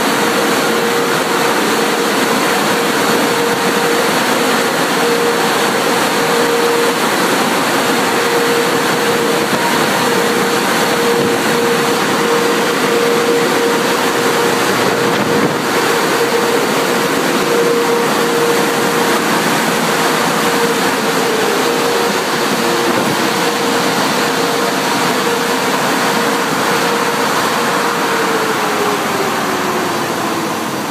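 Tunnel car wash machinery running: a loud steady rush with a steady hum, the hum falling in pitch near the end as a motor winds down.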